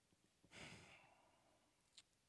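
Near silence, broken by one short breath from a man about half a second in.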